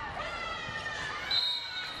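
Volleyball court sounds: shoes squeaking in high, sliding chirps, then about a second and a half in the referee's whistle blows one steady high note, calling a four-touch fault.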